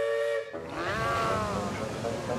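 Cartoon steam locomotive's whistle giving a short steady two-note blast, then a hiss of steam with a whistle tone that rises and falls as the engine sets off.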